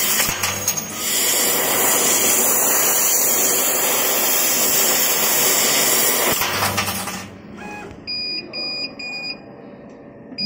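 Loud steady hiss of a CO2 laser cutting head's assist gas as it cuts stainless steel sheet, stopping sharply about seven seconds in. A run of short, high electronic beeps follows near the end.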